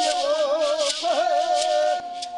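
Bororo ritual chant: voices singing long, wavering notes, the last one held, over rattles shaken in a steady rhythm.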